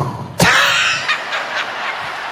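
Laughter from the comedian at the microphone and from the theatre audience. It starts with a sharp hit about half a second in, then a dense wash of laughter that slowly fades.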